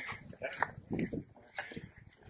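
Indistinct voices of people talking, no clear words.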